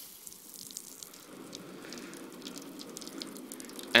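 Feeble spray of water from a garden-hose nozzle pattering onto a car's windscreen. The hose is broken and duct tape has not fixed it, so the spray is weak. It is faint at first and grows a little from about a second in.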